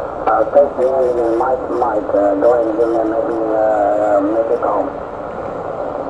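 A distant station's voice received on single-sideband through the speaker of an MFJ-9420 20-meter SSB transceiver, with a station on a 20-meter net talking. The speech is squeezed into a narrow band of pitch over steady receiver hiss and stops about five seconds in.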